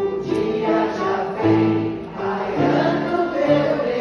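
Live singing with grand piano accompaniment: a woman sings sustained melody notes over the piano, with other voices singing along.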